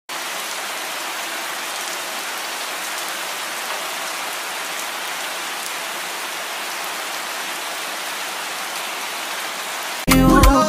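Steady rain, an even hiss with faint scattered drop ticks, starting suddenly.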